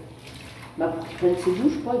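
Water running steadily from a kitchen tap into a stainless-steel sink. It is heard on its own for the first second and then under talk.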